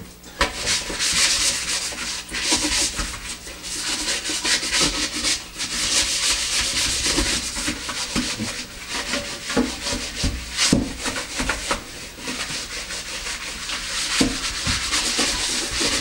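Skoy Scrub cloth rubbed back and forth over the basin of a white kitchen sink: a continuous scratchy scrubbing in uneven strokes.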